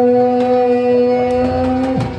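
A man's voice holding one long sung note, steady in pitch, breaking off at the very end.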